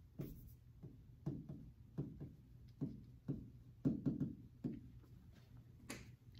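Pen or stylus tapping against the glass of an interactive touchscreen display while writing by hand: a string of faint, irregular knocks, one as each stroke lands.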